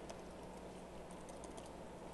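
Faint laptop keyboard typing: a few light key clicks, most of them about a second in, over a steady low hum.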